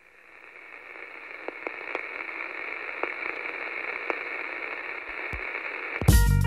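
Radio static: a thin, steady hiss that swells up over the first second, with a few faint crackles scattered through it.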